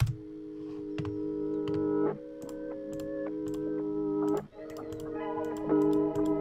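Time-stretched, reversed melody loop playing back: sustained chords that swell in loudness and cut off abruptly, twice, before swelling in again, with faint ticks over them.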